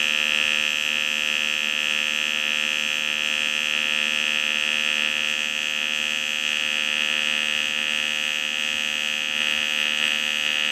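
TIG welding arc from a Canaweld TIG AC/DC 201 Pulse D running in pulse mode on thin steel: a steady, high-pitched electrical buzz with no break.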